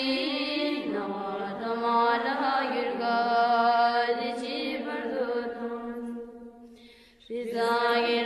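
Melodic chanting of a Tibetan Buddhist prayer in long held notes that slide between pitches. The chant fades out about six seconds in, then resumes after a short breath pause near the end.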